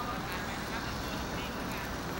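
Faint, indistinct voices over a steady outdoor background hum.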